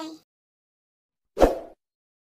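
A single short pop sound effect about a second and a half in, added in editing to the end-card text animation.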